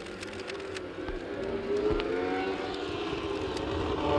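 Formula One racing car engine at speed, growing steadily louder as it approaches, its pitch gliding.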